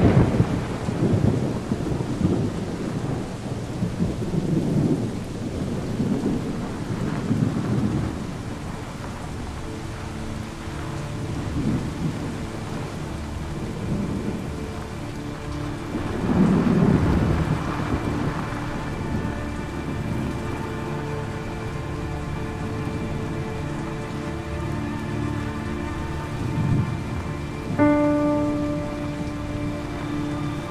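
Steady rain with repeated low rolls of thunder, the biggest about sixteen seconds in. Sustained musical notes rise under it in the second half, with a new chord entering near the end.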